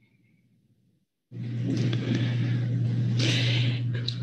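Near silence, then about a second in an open microphone cuts in with steady loud background noise: a low hum under a broad hiss.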